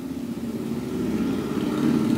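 A steady low mechanical hum, like an engine running, slowly growing louder.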